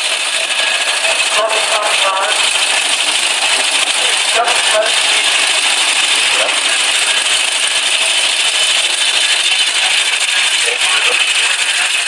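Veteran car engines running as the cars drive off, heard as a steady rattling hiss, with faint snatches of voices from onlookers.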